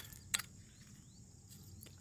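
Quiet outdoor background with a single sharp click about a third of a second in, and a fainter one near the end, as a rusted metal roller skate is picked up off gravel.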